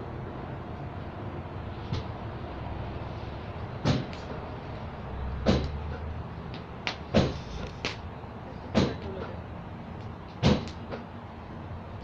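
Wood campfire burning, with sharp pops and cracks at irregular intervals, about ten over the stretch, above a low steady background.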